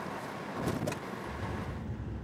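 Car driving in city traffic, heard from inside its cabin: steady road and engine noise, with the low rumble growing a little stronger near the end.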